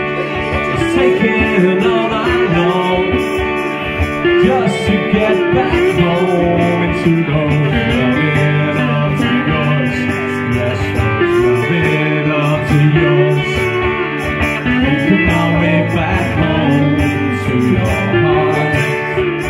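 Live acoustic band: two acoustic guitars strummed steadily while a man sings the song.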